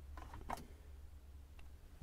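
A few faint clicks from a vehicle's gear selector lever being moved into reverse to switch on the reversing lights, one near the start and another about half a second in, over a low steady hum.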